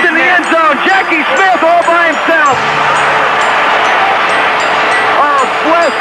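Stadium crowd at a football game cheering and shouting, many voices rising and falling over a steady roar.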